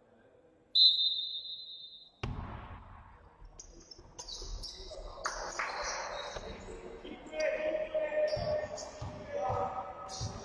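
Referee's whistle, one held blast about a second in, then the sounds of basketball play in a gym: the ball bouncing on the court and players' voices.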